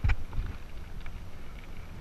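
Mountain bike rolling over a gravel fire road: a steady low rumble of tyres on loose gravel with wind on the microphone, and a few light clicks and rattles from the bike and stones.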